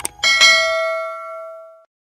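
Subscribe-animation sound effect: a couple of quick mouse clicks, then a bell ding that rings and fades away over about a second and a half.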